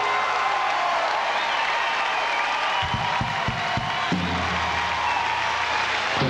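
Studio audience applauding and cheering, with whoops, over the end of a live band's rock music. A steady low band note comes in about two-thirds of the way through.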